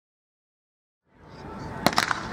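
Silence for about a second, then open-air background noise fades in and a starter's pistol fires near the end: one sharp crack, with a second crack just after it, starting the race.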